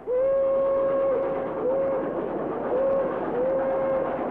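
Steam whistle of an old wood-burning locomotive on a trial run at speed: a long blast, two short toots and another long blast, on one steady pitch over the running noise of the train.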